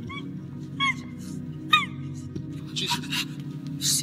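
Short, high, arching vocal cries over background music of sustained notes: two brief yelps about a second apart, then two harsh, breathy shouts near the end.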